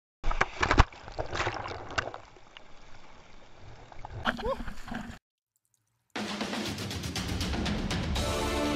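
Shower water spraying and splashing, with several sharp knocks and a short rising tone. After a brief silence, a louder, dense sound starts and turns into music near the end.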